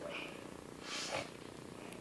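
Quiet room noise, with a soft, brief breathy hiss about a second in.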